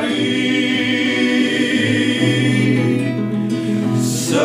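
Men singing a slow Georgian song in harmony, holding long notes, with an acoustic guitar accompanying.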